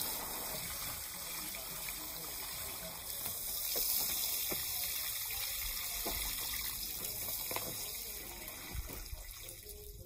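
Water pouring from a watering can's rose spout onto bare soil around seedlings: a steady splashing hiss that eases off near the end.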